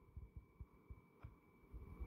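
Near silence: room tone with a faint steady high hum, a few soft low thumps and one small click.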